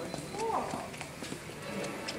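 Indistinct background voices and general hubbub of a busy retail store, with a short rising-then-falling voice-like sound about half a second in and a few light clicks.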